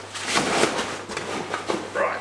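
Nylon fabric rustling in irregular surges as a packed Mystery Ranch Zoid Cube stuff bag is pushed down into a backpack's main compartment and the pack's fabric is handled.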